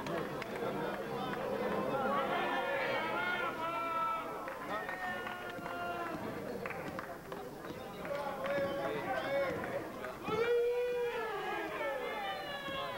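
Several people talking and calling out at once, the voices of spectators and players around a basketball court, with one louder, high-pitched call about ten and a half seconds in.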